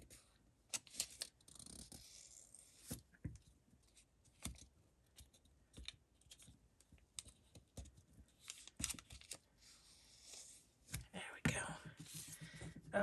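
Paper rustling and crackling in the hands, with scattered small taps and clicks, as glue is dabbed from a bottle's applicator tip onto a narrow strip of patterned paper; the handling gets busier near the end.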